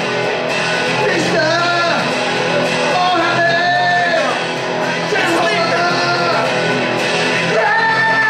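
A man singing live into a microphone while strumming a guitar, rock style, his voice holding several long notes.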